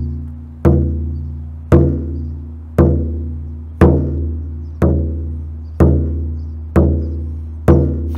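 A 16-inch goat-rawhide frame drum struck by hand in a slow, steady beat, about one stroke a second, eight strokes in all. Each stroke has a deep bass tone that rings on until the next.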